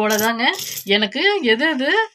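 A voice singing a wordless 'la-la' tune with long held, wavering notes. Coins clink and cloth rustles as they are handled, loudest about half a second in.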